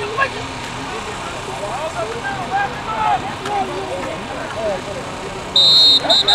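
Overlapping shouts and cheers from spectators during a football play, then near the end a loud, shrill referee's whistle blast of about a second, blowing the play dead after the tackle.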